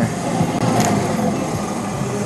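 Steady rumbling ride noise from an e-bike rolling over pavement, with a faint low hum underneath.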